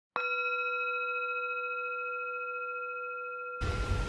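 A single struck singing-bowl tone that rings on with several steady overtones and fades slowly. Background noise comes in near the end.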